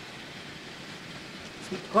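N scale camera car running along model railway track: a steady, even hiss of small wheels and motor.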